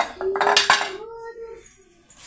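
An aluminium pressure cooker and its lid being handled, with a few sharp metal clinks and clatters in the first second, followed by a steady tone that fades out about a second and a half in.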